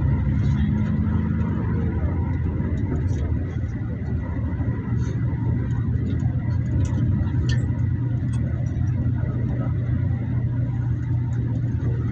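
Steady low rumble of a moving road vehicle, engine hum and road noise heard from inside the vehicle, with a few faint ticks.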